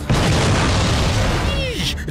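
A sudden loud boom sound effect that begins just after the start and rumbles on before fading about a second and a half in, followed by a brief vocal exclamation near the end.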